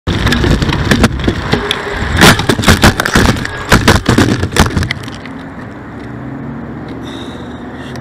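A bicycle crashing: rough rattling and rumbling turn into a string of hard clattering knocks as the front wheel is jammed by a dropped bike light battery and the bike flips, the loudest knocks between about two and five seconds in. After that it settles to a quieter low steady hum.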